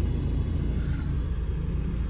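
Steady low rumble of a Mahindra car's engine and road noise, heard from inside the cabin while driving.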